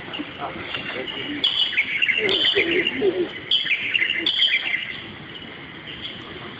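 Small birds chirping in short high bursts, four clusters of quick chirps, with people talking faintly underneath.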